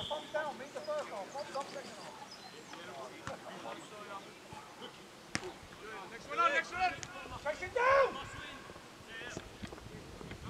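Distant shouting from players across a football pitch, loudest a little past the middle, with one sharp knock of a ball being struck about five seconds in.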